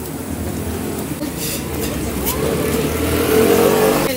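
A passing road vehicle's engine, growing steadily louder and loudest near the end.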